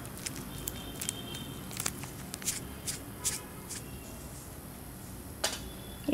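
Quiet room noise with a few scattered light clicks, the sharpest shortly before the end, and a faint steady high-pitched whine.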